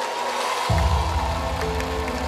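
Studio audience applauding and cheering under a swelling TV-show music cue, with a heavy bass coming in a little under a second in.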